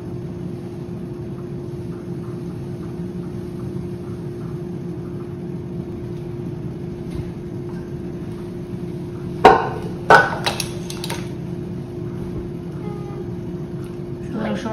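Steady background hum with a constant tone, broken a little past halfway by two or three sharp knocks as a glass sugar container is set down on the counter.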